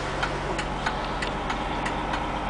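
Diesel coach engine idling as a steady low hum, heard inside the cabin, with a light, regular ticking about three times a second.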